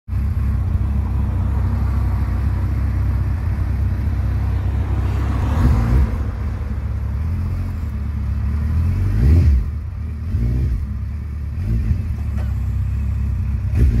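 Suzuki GSX1400's inline-four engine idling steadily close by, its revs rising briefly a few times.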